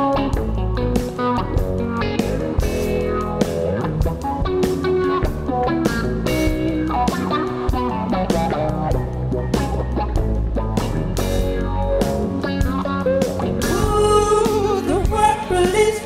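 Live rock band playing: electric guitar lines over a steady drum beat and bass, with a voice starting to sing near the end.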